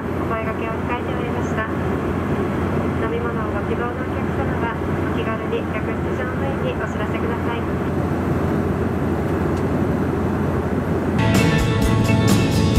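Steady cabin drone of a Bombardier CRJ700 jet in flight, with a cabin-crew announcement over the PA for the first several seconds. Music starts about eleven seconds in.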